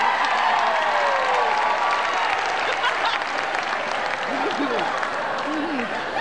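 Audience applauding steadily, with a few voices heard through it in the second half.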